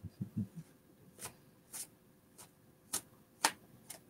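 A deck of oracle cards being shuffled by hand for a reading: a few soft handling knocks, then a run of faint, sharp card clicks about every half second.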